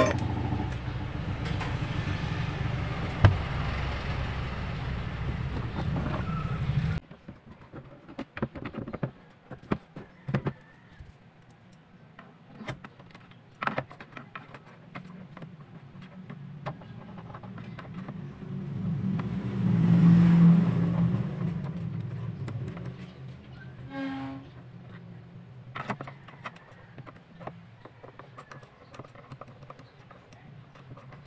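A steady low hum that cuts off suddenly about seven seconds in, then scattered light clicks and scrapes of a screwdriver working on a plastic speaker cabinet. A vehicle passing swells and fades around twenty seconds in.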